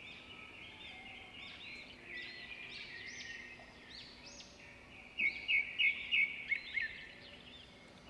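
Birds chirping and singing steadily, with a run of louder, quick chirps about five seconds in.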